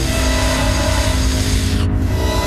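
A vampire's long hiss, a dubbed-in sound effect added in post-production, lasting nearly two seconds and cutting off sharply just before the end, over a horror film score with sustained notes.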